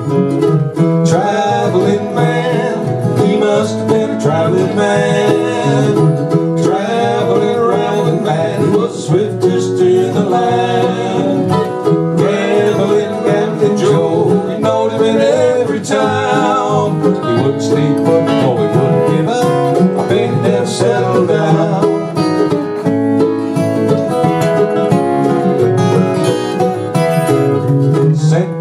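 Instrumental break between sung verses: two acoustic guitars and a smaller plucked string instrument picking a country-folk tune together at a steady, lively pace.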